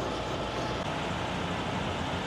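Steady low rumble of an idling diesel engine under an even hiss, with no distinct knocks or clicks.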